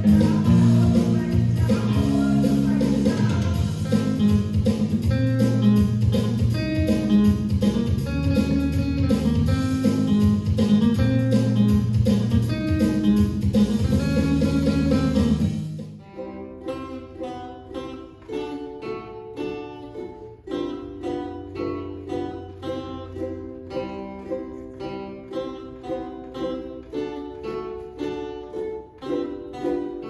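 Electric guitar played loudly, with a full low end. About halfway it cuts abruptly to a quieter acoustic guitar and ukulele picking a tune together in a steady rhythm.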